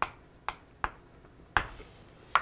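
Chalk striking a chalkboard as a word is written: four sharp clicks spread over two seconds, the last one the loudest.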